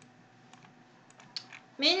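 A few light, sharp computer clicks, then near the end a voice starts calling out a name in a drawn-out, sing-song tone.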